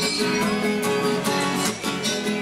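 Two acoustic guitars played together in steady rhythmic strumming, the chords ringing on between strokes.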